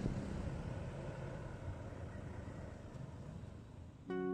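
Road noise of a passing vehicle, fading steadily as it moves away.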